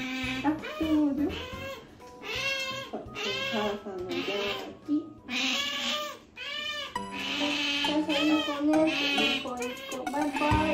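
Asian small-clawed otter begging for food with a run of repeated high-pitched squeaking calls, over background music.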